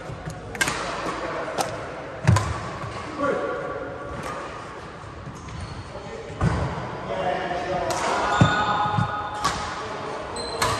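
Badminton rally in an echoing sports hall: several sharp racket strikes on the shuttlecock, with shoes thudding and squeaking on the wooden court floor.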